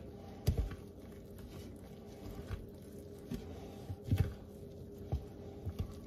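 Wooden spoon stirring flour and buttermilk in a ceramic bowl, with soft, irregular knocks of the spoon against the bowl.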